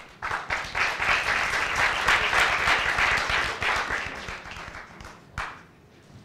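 Audience applauding: clapping starts just after the start, holds for about three seconds, then thins out and fades over the next two. One single sharp sound follows near the end.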